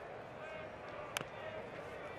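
Steady ballpark crowd murmur, with a single short crack of a bat hitting a pitched ball a little past a second in.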